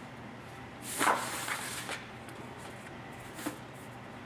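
Handling noise as a wooden steel-rule cutting die and material are positioned on a die cutting press's metal bed: one short sliding swish about a second in, then a faint click near the end.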